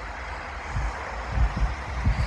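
A pickup truck's engine rumbling low as it pulls away over snow.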